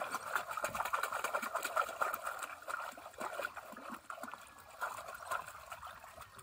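Shallow muddy water splashing and trickling in many small irregular splashes as woven bamboo plunge-basket fish traps are worked down into it and hands move about inside them.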